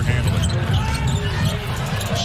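Basketball being dribbled on a hardwood court, bouncing repeatedly under the steady hubbub of an arena crowd.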